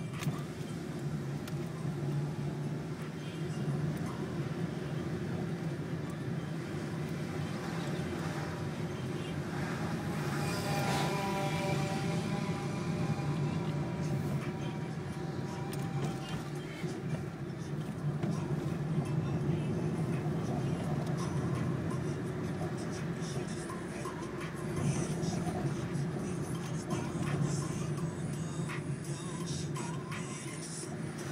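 Steady low engine and road noise heard inside a moving car's cabin. About ten seconds in, a pitched sound with several tones rises over it for a few seconds.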